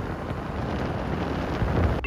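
Wind buffeting the microphone: a loud, uneven rush heaviest in the low end, with vehicle rumble underneath.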